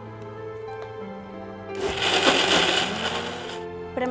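Electric mixer grinder running in one short burst of about two seconds, grinding batter, with background music underneath.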